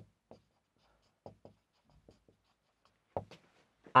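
Marker pen writing on a whiteboard: a few short, faint strokes and taps spaced out with pauses between them.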